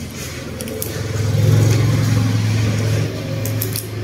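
A low steady hum swells in about a second in and holds. Faint clicks of crab shell being pulled apart by hand sit under it.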